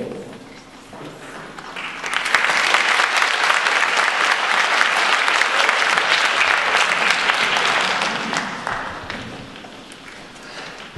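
Audience applauding in a large hall: the clapping swells about two seconds in, holds steady, then dies away near the end.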